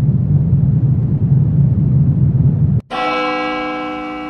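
Logo sting sound effect: a low rumble that cuts off about three seconds in, replaced by a single sudden bell-like ringing tone that slowly fades.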